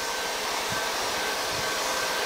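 Steady rushing air, like a blower or wind machine, that holds at an even level without pitch or rhythm.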